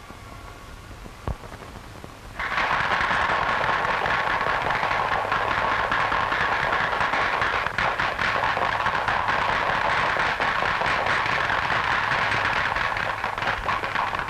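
A crowd applauding, the clapping starting abruptly a couple of seconds in and continuing steadily.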